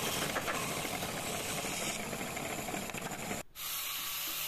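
Band saw blade cutting through a curved teak board: a steady, hissing rasp. About three and a half seconds in it cuts off abruptly, and a quieter steady hum follows.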